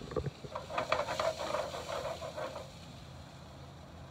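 Hot dogs sizzling and crackling in a frying pan while being turned with metal tongs, with a couple of sharp knocks at the start and the crackling dying down a little before three seconds in.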